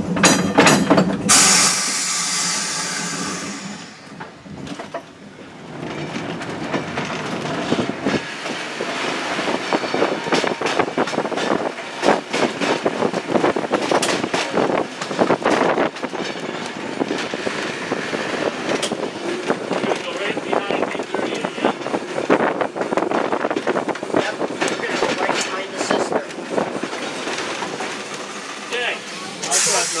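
Electric trolley car running on its rails: wheels clacking and rattling over rail joints, with a pitched hum at the start and a loud hiss of air about two seconds in.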